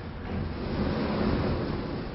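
Sliding chalkboard panels being pushed and pulled along their tracks, a steady low rumble for about two seconds.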